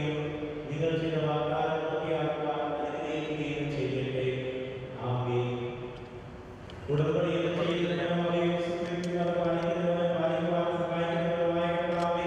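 A low man's voice chanting liturgy in long, steady-pitched phrases, with a short break about seven seconds in before the next phrase begins.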